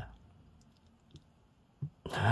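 Quiet room tone with a few faint short clicks, one about a second in and a slightly louder one near the end.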